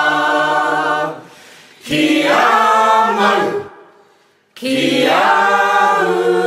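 Several voices singing a Moriori song unaccompanied, in long held notes. The singing breaks off about a second in, comes back a second later, and fades to near silence just before the middle. A final held chord then comes in about halfway through.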